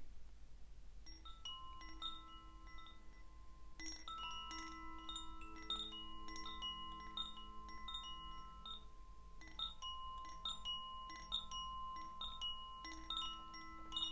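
Metal chimes ringing: several notes of different pitch struck in loose clusters, each note ringing on, with a new cluster every few seconds.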